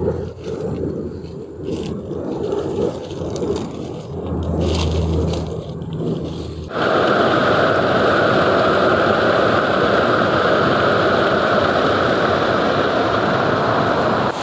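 Small garden waterfall splashing into a pool: a steady rush of water that starts abruptly about seven seconds in and is the loudest sound. Before it, quieter rustling and scraping, with a low hum for a couple of seconds.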